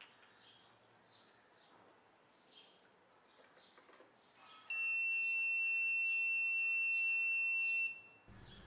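A 5 V buzzer on an Arduino current-monitoring circuit sounding one continuous high-pitched tone. It starts a little after halfway through and stops near the end. The buzzer is the overload alarm: the load current has gone above the 0.2 A limit.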